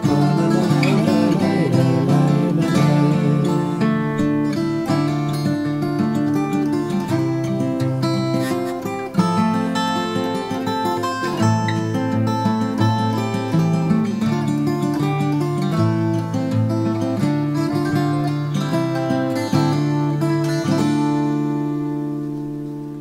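Martin 000-42VS steel-string acoustic guitar fingerpicked in an instrumental passage, a steady run of plucked notes and chords that fades near the end.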